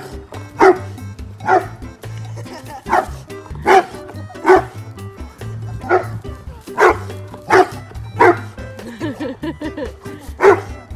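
Young English bullmastiff barking in a regular series, about one bark a second.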